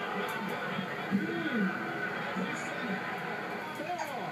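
Boxing broadcast audio playing from a television: steady arena crowd noise with indistinct voices over it during a knockdown count, and a brief louder moment about a second in.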